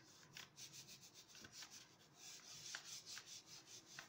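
Hands rubbing a sheet of paper down onto a paint-covered silicone craft mat to pick up a mono print: faint, quick, repeated swishing strokes of palm on paper.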